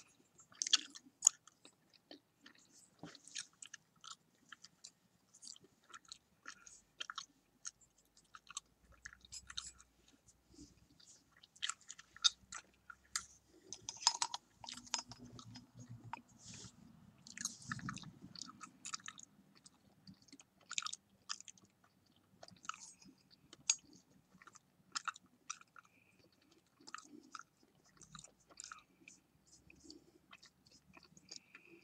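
Close-miked chewing gum being chewed with the mouth open, making irregular wet smacks and clicks about one or two a second. A softer, lower sound runs beneath the chewing for a few seconds in the middle.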